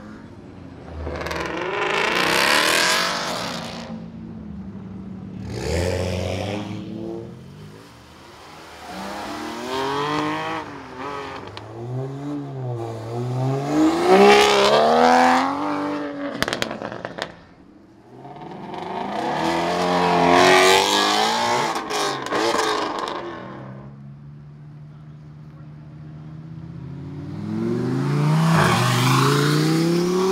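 A series of sports cars accelerating hard away one after another, about five in turn. Each engine revs up through the gears, its pitch rising and dropping at the shifts, swelling loud and then fading as it pulls away. The last, rising near the end, is a Lamborghini Huracán's engine.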